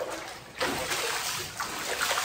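Floodwater inside a house: a steady rush of running, splashing water that starts about half a second in.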